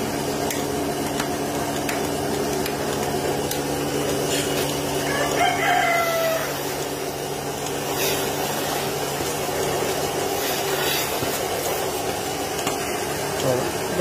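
Portable milking machine's vacuum pump running with a steady hum, and a rooster crowing once about five seconds in.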